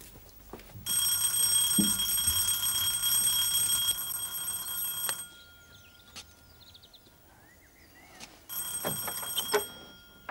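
Electric doorbell ringing: one long ring of about four seconds, then a second, shorter ring.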